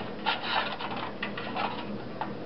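Thin aluminium foil pie tin crinkling and crackling as it is handled and set on a cup, in two short clusters of scratchy clicks.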